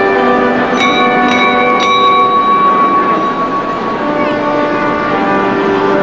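Several bells ringing together, many overlapping tones sounding on, with three fresh strikes about half a second apart near the start.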